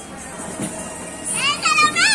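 Children playing, with chatter and music in the background; about a second and a half in, a child lets out a loud, high-pitched cry whose pitch wavers up and down.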